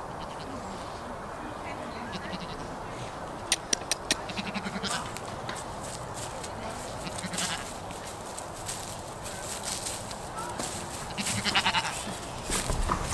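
Goat bleating, with a wavering call near the end as one walks up close. A quick run of sharp clicks about three and a half seconds in is the loudest sound.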